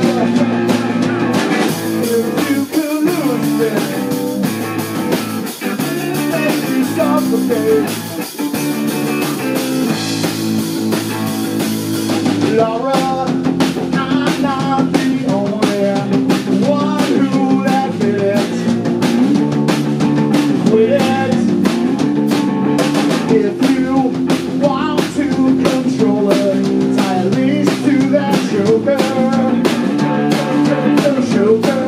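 Live rock band playing with electric guitar, electric bass and drum kit. A wash of cymbals rings through the first twelve seconds or so, then the drums settle into a fast, even beat.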